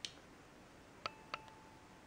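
Faint light clicks of a glass pentane thermometer tapped against a piece of wood, to shake its separated liquid column back together. There is one click at the start, then two more about a second in, a third of a second apart, followed by a brief ringing tone.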